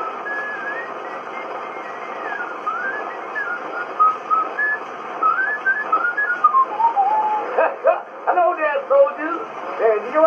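A man whistling a tune on a 1918 Edison Diamond Disc recording played back on a phonograph, over the record's steady surface hiss. About eight seconds in, the whistling stops and a man's voice takes over.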